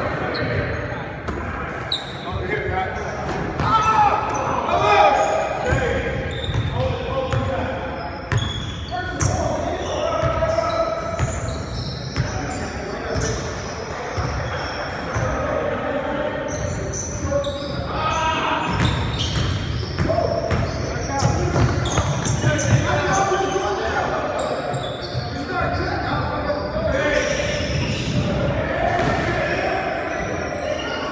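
Basketball bouncing on a hardwood gym floor during a game, with many short knocks, and players' voices calling out. The sound echoes around a large gym hall.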